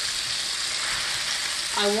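Steak frying in butter in a frying pan: a steady, even sizzle.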